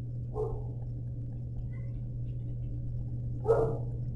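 A pause in speech filled by a steady low electrical hum, with two brief faint voice sounds, about half a second in and near the end.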